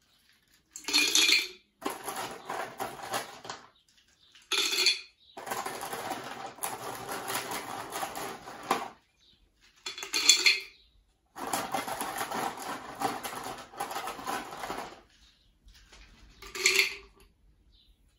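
Blackberries dropped by hand into a clip-top glass jar: stretches of many small taps and clicks against the glass, with four short, louder knocks spaced a few seconds apart.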